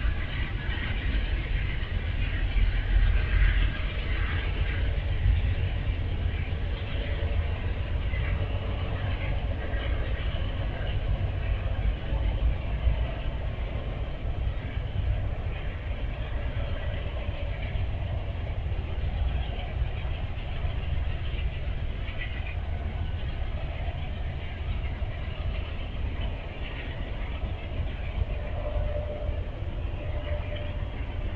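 Steady low rumble of diesel trains in a rail yard, loudest a few seconds in as a passenger train pulls away, and carrying on after it has gone from sight.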